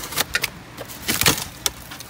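Scissors cutting the packing tape on a styrofoam shipping box and the foam lid being pulled open: a few short, sharp cracks and scrapes, the loudest a little past halfway.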